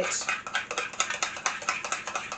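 A metal teaspoon stirring strawberry jam in a small glass bowl, clicking and scraping against the glass in quick, uneven ticks, several a second.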